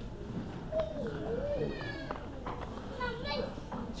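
Quiet talk among a few people, including a high child's voice, with scattered short phrases.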